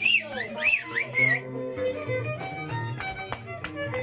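Andean harp and violin playing carnival music: plucked harp notes over a steady low bass line, with a violin melody. Over the first second and a half a high, wavering whistle swoops up and down above the music.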